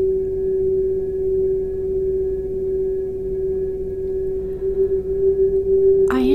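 Crystal singing bowl ringing in one steady, sustained tone, with fainter steady higher tones above it. About two-thirds of the way in, the tone begins to waver in loudness.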